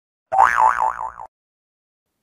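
A cartoon 'boing' sound effect of about a second: a springy pitch that wobbles up and down four or five times, then cuts off.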